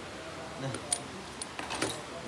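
A few light, sharp metallic clicks and clinks as a brush cutter's metal gear head and shaft are handled, about a second in and again near the end; the engine is not running.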